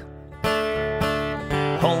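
Acoustic guitar being strummed: a chord rings out about half a second in, followed by further strums, with singing resuming near the end.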